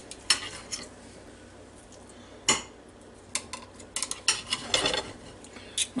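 Knife and fork clinking and scraping against a ceramic plate while cutting cooked beef short-rib meat into bite-sized pieces. The clicks are irregular: the sharpest comes about two and a half seconds in, and a quick run of them follows about a second later.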